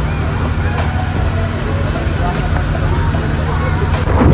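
Passenger boat's engine running with a steady low hum, heard from inside the enclosed cabin, with passengers' voices faint in the background.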